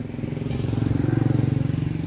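Engine running in the background: a steady low throb with a fast, even pulse, swelling a little in the middle.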